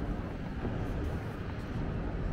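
Steady low rumble of city traffic and urban background noise, even throughout with no single sound standing out.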